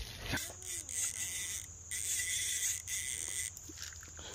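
Insects trilling steadily in a high, hissing chorus that starts and stops abruptly, with a faint voice in the first second.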